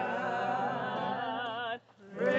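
Several voices singing in choir style, holding sustained notes with vibrato, with a brief break near the end.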